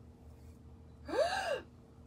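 A woman's voiced gasp of delight about a second in, lasting about half a second, its pitch rising and falling back.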